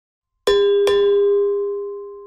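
A bell-like chime struck twice in quick succession, about half a second in and again less than half a second later. It rings on one steady pitch and fades slowly.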